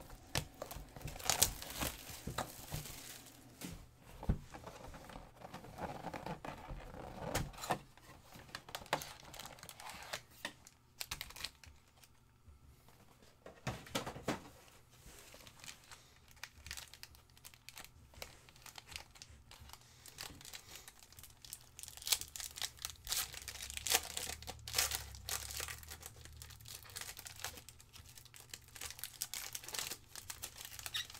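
Crinkling and tearing of wrapper and cardboard as a trading-card hobby box is opened and its foil packs are pulled out and handled, in irregular bursts with a quieter stretch in the middle. Near the end a foil card pack is torn open.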